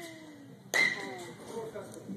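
A metal baseball bat strikes a ball once, about two-thirds of a second in, with a sharp crack and a short ringing ping.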